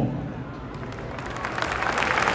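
Large arena audience applauding, the clapping swelling over the second half.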